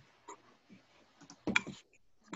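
Faint, scattered clicks of a computer keyboard and mouse, with a louder cluster of clicks about one and a half seconds in.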